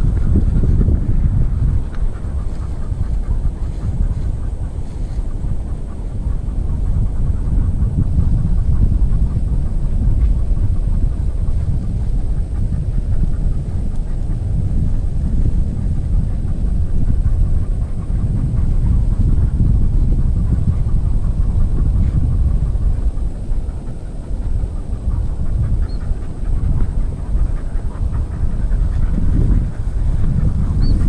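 Wind buffeting an outdoor camera microphone: a loud, gusting low rumble, with rustling as the wearer walks through tussock grass.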